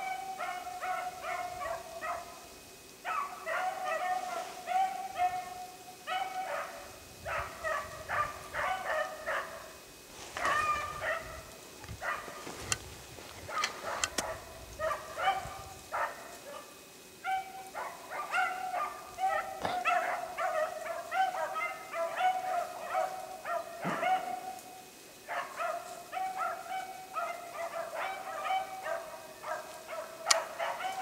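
Rabbit hounds baying in a near-continuous string of barks, broken by a few short pauses, as they run a rabbit's scent trail.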